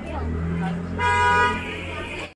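A vehicle horn sounds once, about a second in, for about half a second, over a steady low hum and faint voices.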